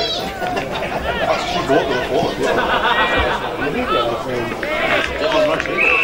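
Several voices talking and calling out over one another, the chatter of people around a football ground, with a short high steady tone near the end.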